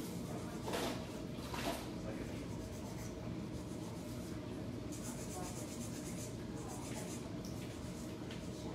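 Faint scratching and rubbing of gloved hands and a fine liner brush working on a nail, close to the microphone, over a steady low background noise.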